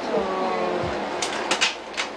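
Slide projector changing slides: a quick run of mechanical clicks and clacks about a second in, over the projector's steady fan hum.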